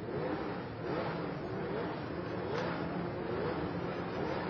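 Formula 1 racing car engines revving, the pitch climbing in short sweeps again and again.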